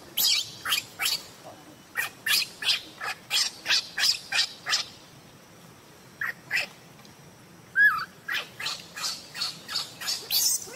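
Baby macaque's short, high-pitched cries, about three a second, with a pause of about a second and a half in the middle before they start again.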